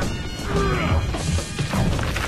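Cartoon soundtrack: background music under crashing rock sound effects, with several sharp impacts over a low rumble and a short vocal cry about half a second in.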